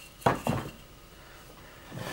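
Sawn basswood carving blanks knocking against each other as they are picked up and shifted by hand: two sharp wooden clacks within the first second.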